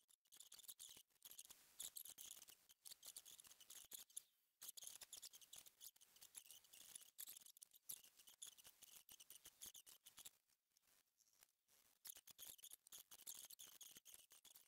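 Faint, scratchy rubbing of fine 0000 steel wool working wax into the wooden cabinet's finish, in uneven strokes with short pauses, the longest between about ten and twelve seconds in.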